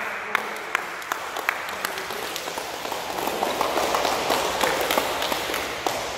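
A group of basketball players clapping in a gym: sharp single claps about twice a second at first, then applause from the whole group swelling in the middle and thinning near the end.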